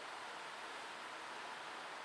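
Heavy rain, a steady even hiss with nothing else standing out.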